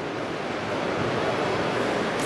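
Steady background noise of a large, busy exhibition hall, an even hiss with no distinct events, a little louder from about a second in.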